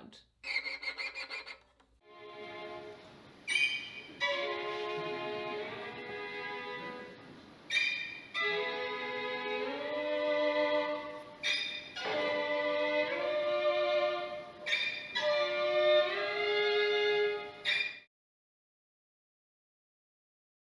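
A string orchestra with violins to the fore plays sustained chords whose notes step and slide in pitch. Sharp accented strokes cut in every three to four seconds, and the music stops suddenly near the end. A brief laugh comes at the very start.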